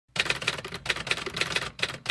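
Typing sound effect: a quick, uneven run of typewriter-like key clicks accompanying a caption being typed on screen.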